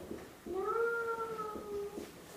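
A single drawn-out squeak of a marker on a whiteboard, starting about half a second in, lasting well over a second and sliding slightly lower in pitch toward the end.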